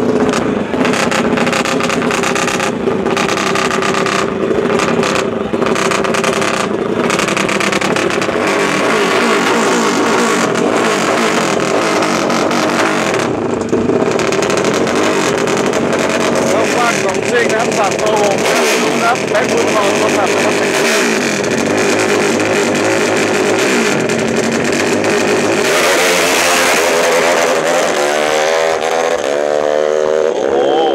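Small-capacity drag-racing motorcycle engine revving hard at the start line, held high and blipped up and down, then rising steeply in pitch near the end as the bike launches down the strip.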